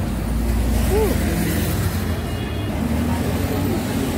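Street traffic: the low rumble of a motor vehicle running close by, strongest for the first two and a half seconds and then easing.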